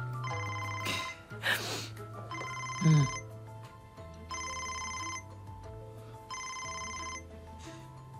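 Mobile phone ringing, a fluttering electronic ring that repeats about every two seconds, over soft background music.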